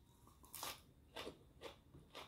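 A person biting and chewing a sprig of fresh raw greens: faint crisp crunches, four of them about half a second apart.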